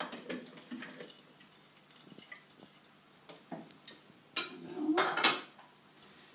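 Kitchen utensils and dishes clinking and knocking as food is handled on a wooden cutting board and into a plastic food processor bowl: scattered light clicks, with a longer, louder clatter about five seconds in.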